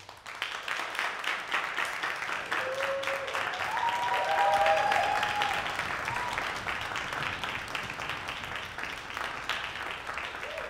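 Audience applause breaking out suddenly at the end of a performance, with a few cheers about three to five seconds in; loudest around five seconds in, then steady clapping.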